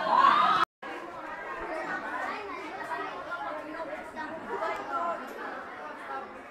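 Several students' voices talking over one another in general chatter, with no single clear speaker. The sound cuts out completely for a moment less than a second in, then the chatter resumes.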